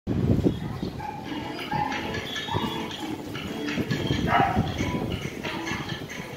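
A crowd of children chattering and calling out over many footsteps and thumps on a tiled floor.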